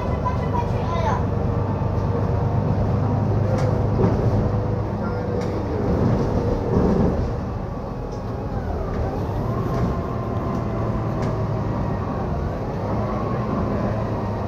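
Steady low engine drone and cabin rumble inside a double-decker city bus, with faint voices now and then.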